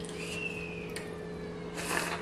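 A child crying faintly from another room: one thin, drawn-out wail that sinks slightly in pitch, over a steady low room hum. A brief wet eating noise comes near the end.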